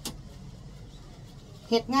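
A single sharp click of plastic clothes hangers knocking together as they are handled. Then a low, steady background hum until a woman's voice resumes near the end.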